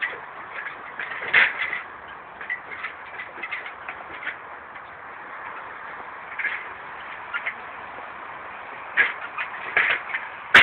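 Scattered light knocks and clicks from a man stepping down the rungs of an aluminium extension ladder, over steady outdoor background noise; the loudest knocks come about a second and a half in and near the end.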